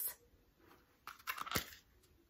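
Thin plastic clamshell packaging of a Scentsy wax bar being peeled open, a few short crackles and clicks about a second in.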